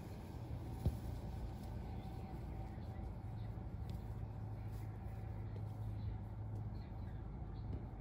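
Steady low motor hum, with one short faint click about a second in.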